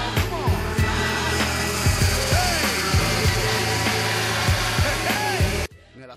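Music playing over the high, buzzing drone of racing kart engines, with repeated rising and falling sweeps in pitch. Both cut off abruptly near the end.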